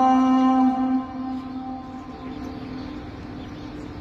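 A muezzin's voice holding the long final note of a phrase of the call to prayer (adhan). The note stops about a second in and dies away slowly as an echo, leaving a low, steady background.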